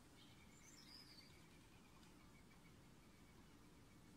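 Near silence: faint background noise, with a few faint high chirps in the first second or so.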